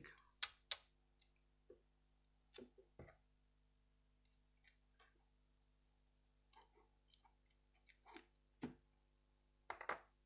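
Faint, scattered clicks and short rustles of a roll of clear adhesive tape being pulled out and handled on a cutting mat, with two sharp clicks right at the start and a cluster more near the end.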